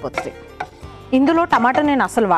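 A spatula stirring mustard seeds and split lentils in a hot nonstick frying pan, with a few sharp clicks in the first half second.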